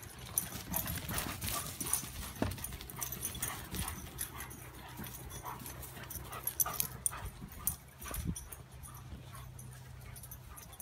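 Two Doberman pinschers playing and chasing on grass: quick, uneven thuds and scuffles of their paws as they run and tussle.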